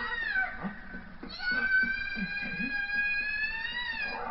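A high-pitched wailing cry: a short call falling away in the first half second, then one long held wail from about a second and a half in until just before the end, rising slightly as it closes.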